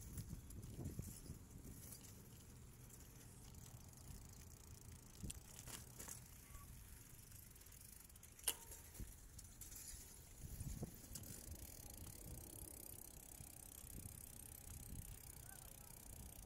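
Faint outdoor ambience with a low rumble and a few light clicks, one sharper click about eight and a half seconds in.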